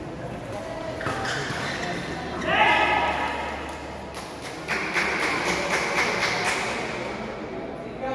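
Racket hits on a shuttlecock in a badminton doubles rally, echoing in a sports hall. About two and a half seconds in a loud shout goes up as the point ends, then from about five seconds voices rise with rapid claps for about a second and a half.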